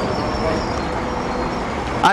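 A steady rushing noise with a low rumble, lasting about two seconds in a pause between spoken sentences.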